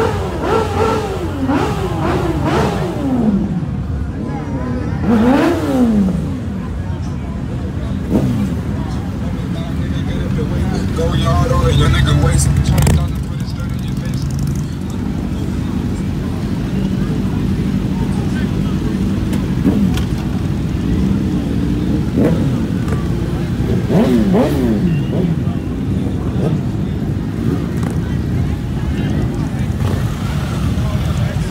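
Motorcycle engines revving and riding past, their pitch sweeping up and down several times, with a louder steady low rumble about halfway through, over a constant background of idling bikes and crowd voices.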